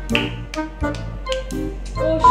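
Music with a steady beat of finger snaps keeping time over sustained pitched notes.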